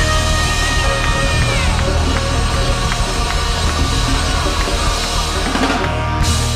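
Live band playing a song with lead vocals, congas, electric guitar, drum kit and keyboards. A long held note near the start falls away about a second and a half in.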